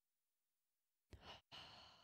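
A man's faint breathing into a close microphone about a second in: a short breath, then a longer sigh.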